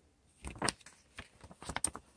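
Paper pages of a booklet manual rustling and crinkling as they are handled and turned, a few soft crackles and taps.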